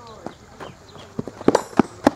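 A few sharp knocks, about a third of a second apart, in the second half, among voices.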